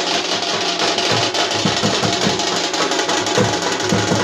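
Loud drumming in a fast, steady beat.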